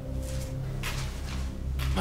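Background film score: sustained low held notes, with a higher held tone that fades out about half a second in, and a few soft, short noises over it.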